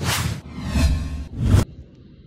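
Whoosh sound effects for an animated title card: three quick swishes in a row, ending about a second and a half in.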